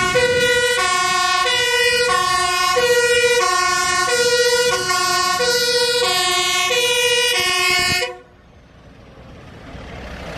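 Two-tone siren of a Mercedes-Benz aerial ladder fire truck, alternating high and low notes of about half a second each, cutting off suddenly about eight seconds in. The truck's engine and tyre noise then grow louder as it comes near.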